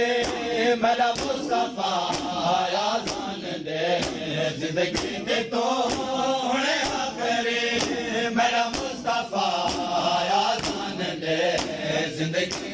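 A group of male voices chants a noha in unison. Sharp slaps about once a second keep the beat, the mourners' hands striking their chests in matam.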